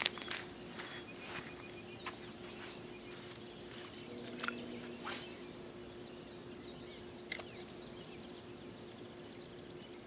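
Small birds singing in the background, runs of quick high chirps, with a few sharp clicks and taps in between and a faint steady hum underneath.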